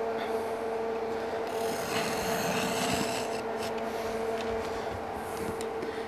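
Roll of pet-guard window screen being handled and unrolled across a wooden workbench: a dry rubbing and scraping, busiest in the middle, with a few light ticks, over a steady background hum.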